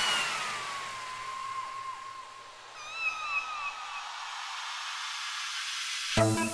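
Hardstyle breakdown: the kick and bass drop out, leaving a rising noise sweep. Over it a long tone glides down through the first two seconds, and a high, wavering sampled cat meow comes about three seconds in.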